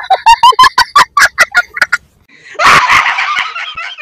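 A woman laughing loudly. First comes a rapid run of high-pitched 'ha-ha' bursts, about six a second for two seconds. After a brief pause comes a longer, breathier burst of laughter.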